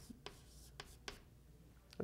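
Chalk writing on a blackboard: a few faint scratchy strokes and taps in the first second or so, then near quiet.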